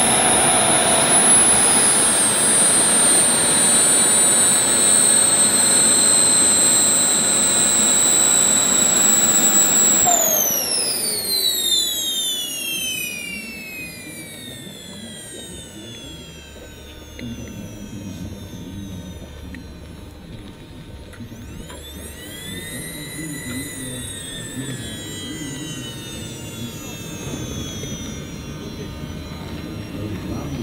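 The four JetsMunt 166 model jet turbines of a large RC Airbus A380 running with a high-pitched whine. About ten seconds in they are throttled back and spool down, the whine falling steadily in pitch and level. Later come a few short rises and falls in pitch.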